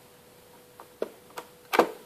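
A few short, sharp clicks and knocks of equipment being handled, the clearest about a second in and again shortly after, with a louder one near the end.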